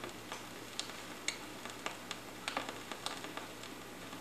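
Vinyl LP surface noise from a stylus running through the quiet band between two songs: a faint hiss with scattered sharp clicks and pops, about two a second.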